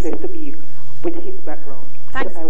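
Speech: a person talking, over a steady low hum.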